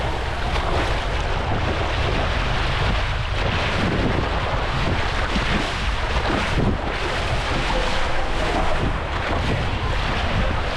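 Steady rushing of water and wind on the microphone as a rider slides down an open fibreglass waterslide, the water sheeting and splashing around their legs.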